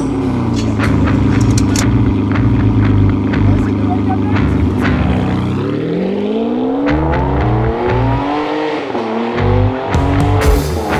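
Ferrari engine running at a steady idle, then revved up from about five and a half seconds in, its pitch climbing in several rising sweeps.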